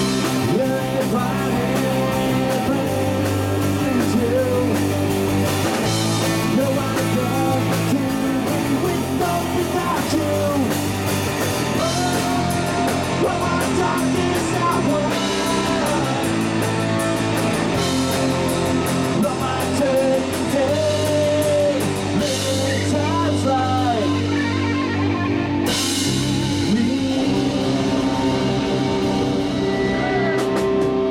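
Live garage-rock band playing a song: electric guitars and drums with a man singing lead through a PA microphone.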